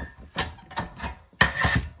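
Hand cable cutters snipping through thin copper pipe: a few sharp metallic snaps, the loudest about one and a half seconds in with a brief ring after it.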